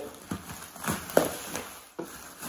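Bubble wrap being handled and pulled while unwrapping a boombox, crinkling and rustling with a few sharp crackles, the loudest a little past the middle.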